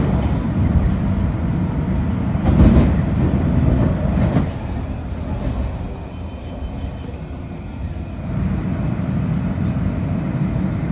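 Washington Metro railcar running on the rails, heard from inside the front of the car as it rolls into a station: a steady rumble with louder jolts about two and a half and four seconds in. The rumble drops quieter around the middle, then rises again about eight seconds in.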